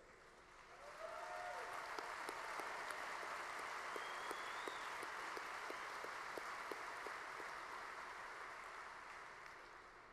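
A large audience applauding, swelling about a second in and slowly fading near the end, with a shout early on and a brief whistle from the crowd.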